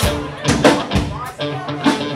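Live rock band playing loudly: electric guitar and a drum kit with repeated hits, with vocals over them.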